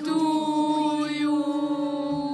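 A woman and children singing together, holding one long, steady note.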